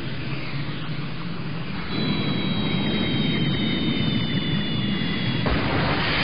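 Cartoon sound effect of a steady rushing rumble, with a thin high whistle that slowly falls in pitch from about two seconds in until shortly before the end.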